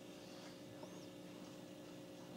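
Near silence: quiet room tone with a low steady hum and one faint, high chirp about a second in.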